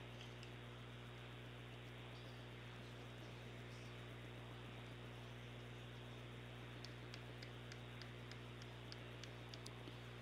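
Faint steady electrical hum with a low hiss, with a few faint high ticks near the end.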